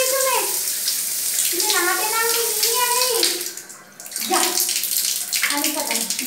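Water from a tap or shower splashing steadily onto a tiled bathroom floor and over bathing birds, briefly stopping about three and a half seconds in. Several long, level, pitched calls sound over the water.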